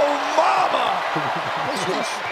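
Excited male basketball commentator's drawn-out exclamation over arena noise, with a basketball bouncing on the hardwood court.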